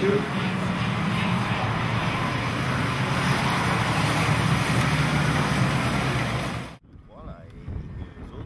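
Several two-stroke racing kart engines running together on the grid, a steady buzzing din that cuts off suddenly near the end.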